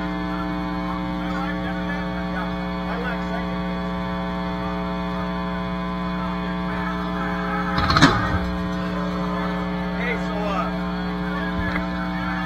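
Steady electrical hum and buzz from the band's live amplifiers idling between songs, with faint crowd chatter. One loud sharp hit comes about eight seconds in.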